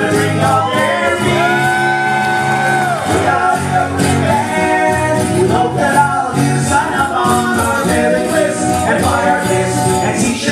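Live song performance: a male singer's voice over strummed acoustic guitar, with one long note held for about two seconds a second in.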